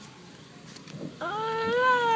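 A woman's long, drawn-out wail of crying that starts suddenly about a second in, rises slightly in pitch and is held on one note. She is still dazed from the anaesthesia after a wisdom tooth extraction.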